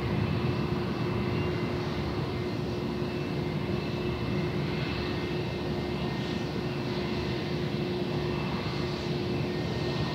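Airbus A320-232's twin IAE V2500 turbofan engines running at low taxi power as the airliner taxis, a steady drone with a constant hum that does not change.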